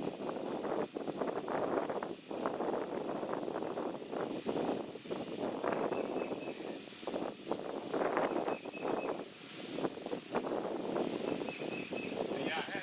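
Wind buffeting the microphone in uneven gusts, with leaves rustling in the trees.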